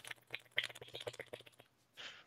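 Faint, irregular small clicks and ticks over a low, steady hum.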